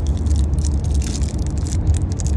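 Plastic candy wrapper crinkling as it is handled, over a steady low rumble inside a car.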